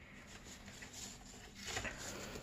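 Faint rustling and light handling noises of a paper steering wheel on a cardboard box car being gripped and turned, a little louder near the end.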